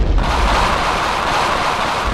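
A loud, steady rumbling noise of the explosion or blast kind, with a heavy deep low end and a hiss in the middle range, holding at an even level throughout.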